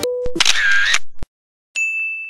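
Edited-in sound effects: a brief low tone, then a noisy half-second effect with a wavering pitch, ending in a click. After about half a second of dead silence comes a steady high beep.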